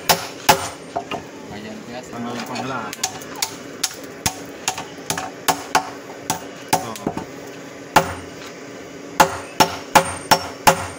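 Two hammers, a hand hammer and a sledgehammer, taking turns striking red-hot bearing steel on an anvil while a machete blade is hand-forged. Each strike rings like metal. The strikes come in runs of about two a second, with two lulls and a quicker run near the end.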